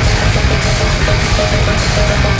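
Thrashcore band recording playing loud and fast: distorted electric guitar riffing over pounding drums and bass, with the riff's notes changing about every half second.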